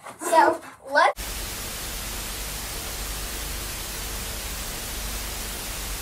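A voice speaks briefly. About a second in, it cuts abruptly to a steady hiss of TV static that holds at an even level.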